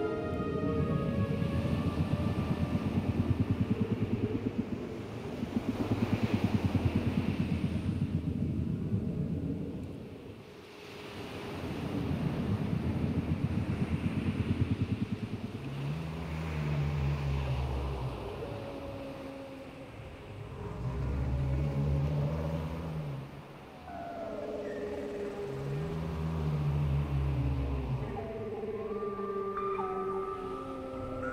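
Whale calls in an ambient relaxation track: first a low, pulsing rumble, then three low moans that rise and fall, a few seconds apart, with higher gliding calls coming in near the end.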